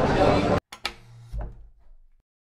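Talk in a busy street cut off abruptly about half a second in, then a single sharp click and a faint, brief low hum that fades to silence.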